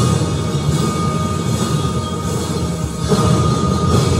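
A drum and lyre band playing: drums and mallet-struck bar instruments, with a steady held high note from about a second in.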